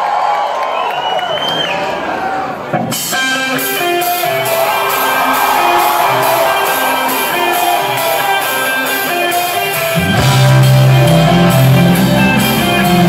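Audience voices and shouts in a large hall, then about three seconds in a live rock-pop band starts a song with guitar and keyboard. The bass and drums come in heavily about ten seconds in.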